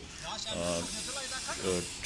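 Dry grass and brush rustling in a steady hiss, with faint voices underneath.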